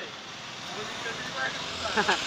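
Street noise with a motor vehicle going by, a steady rush that swells gently, with indistinct voices at the shop counter and a louder voice cutting in at the very end.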